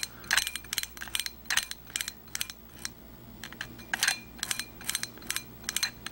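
Reichert phoroptor's sphere lens power wheels clicking through their detents as the mechanism is turned steadily, one click per quarter-diopter step, about four clicks a second.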